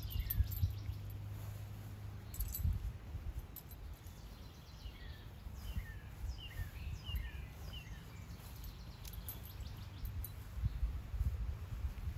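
Small birds chirping in runs of short, falling notes, near the start and again midway, over an uneven low rumble.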